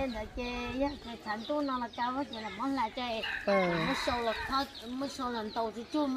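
Chickens clucking in a quick series of short calls, with a longer crowing call a little past the middle.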